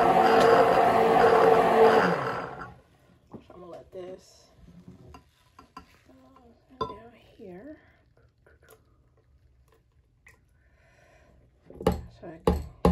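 Stick blender running in a glass jug of cold-process soap batter, mixing lye solution into the oils, then switched off about two and a half seconds in. After that come only faint knocks and scrapes of the blender shaft against the glass.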